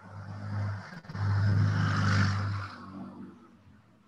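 A motor vehicle going past, heard through a video-call microphone: a low engine hum with a rushing noise that swells about a second in and fades out before the end.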